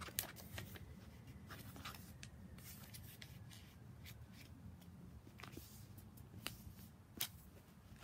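Paper being folded and creased by hand against a plastic board: faint rustles and scattered light crinkling clicks, a few sharper ones near the end, over a low room hum.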